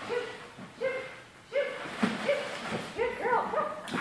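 A dog giving a series of short, high yips and whines, coming faster toward the end.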